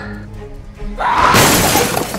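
An edited-in crash sound effect, a loud noisy burst like breaking glass, starting about a second in and lasting about a second, over background music.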